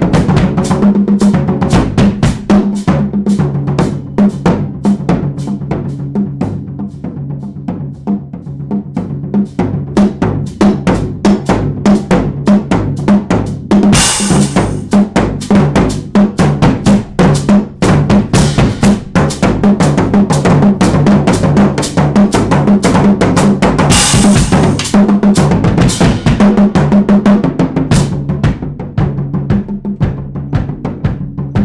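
Drum kit played in a busy improvised groove: fast snare, bass drum and tom strokes with rolls. It gets softer for a few seconds about a quarter of the way in, and two louder crashes ring out about halfway through and again about two-thirds through.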